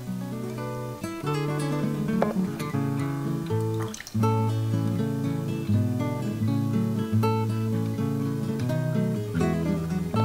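Background music played on acoustic guitar, with a steady rhythm of plucked and strummed notes.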